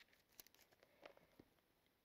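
Near silence with faint, scattered rustles and soft flicks of thin Bible pages being turned by hand.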